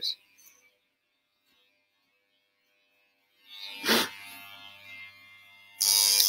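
Near silence for about three seconds, then Wahl electric hair clippers start up and run with a steady low buzz, with a brief louder burst just after they start. A viewer puts the noise down to screws needing tightening.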